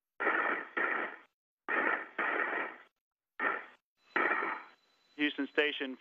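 A spacewalker's breathing picked up by a spacesuit headset microphone and heard over the radio loop: short breaths in and out, each cutting in and out with dead silence between. A man's voice comes on the loop near the end.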